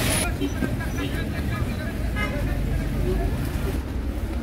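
Street traffic: a steady low rumble of vehicles moving along a snowy road, with faint distant voices.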